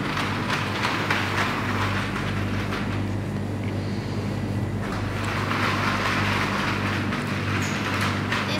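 Rustling of a cloth bag as bread rolls are put into it and the bag is gathered shut. It eases off for a couple of seconds in the middle, over a steady low hum.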